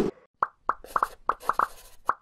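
A low thump, then a quick, uneven series of about seven short cartoon pop sound effects, like bubbles popping.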